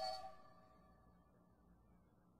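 The last held note of a blues recording, a wavering harmonica note over the band, dies away within the first half second. After that there is near silence.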